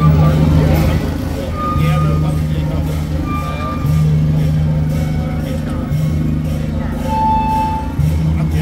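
A loud low hum that breaks off and starts again about every two seconds, over a steady deeper rumble, with crowd voices mixed in.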